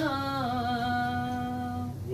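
A woman's unaccompanied voice sings a poem in tarannum, holding one long note at the end of a line. The note dips slightly about half a second in, then holds steady and stops just before the end.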